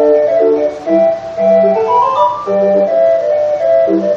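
A hand-cranked 20-note street organ playing a tune from a paper music roll: a bright melody with short, separate bass notes underneath.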